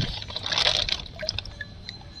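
Water in a fish tank splashing and dripping as a hand moves among floating fish bags: a short splash about half a second in, then scattered drips.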